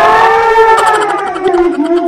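A person's long, loud, high-pitched squeal of excited laughter, held as one note that slowly falls in pitch.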